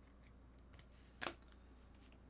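Near silence with one short, sharp click a little past halfway.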